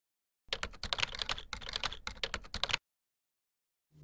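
Typing on a computer keyboard: a quick, continuous run of key clicks starting about half a second in and stopping a little before three seconds.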